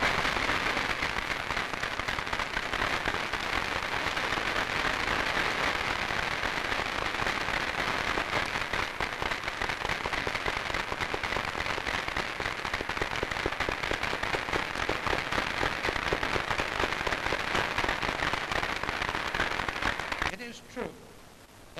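Large banquet audience applauding: dense, continuous clapping from many hands that starts suddenly and cuts off at the end.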